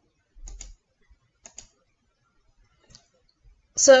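A few light clicks at a computer: a quick pair, another pair about a second later, then a single click, before speech begins at the very end.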